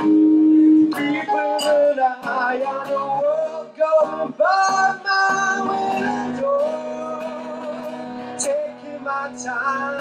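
A man singing with long held notes over his own strummed acoustic guitar, a live solo singer-songwriter performance.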